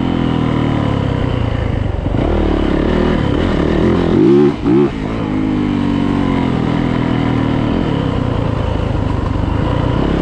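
2018 Yamaha YZ450F's single-cylinder four-stroke engine running steadily, with two quick blips in revs about four and a half seconds in.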